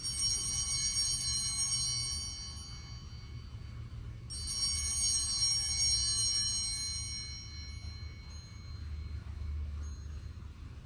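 Altar bell rung at the elevation of the chalice during the consecration: two bright rings about four seconds apart, each fading away over two to three seconds.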